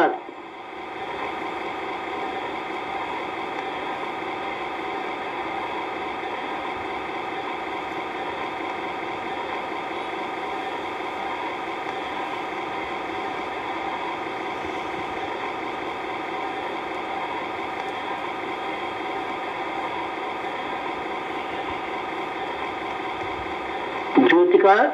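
A steady drone of several held tones, even in level throughout: the background music of a recorded guided meditation, filling the pause between the narrator's spoken phrases.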